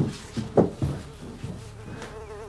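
A housefly buzzing in a wavering drone, coming in about halfway through. It follows a couple of short knocks in the first second.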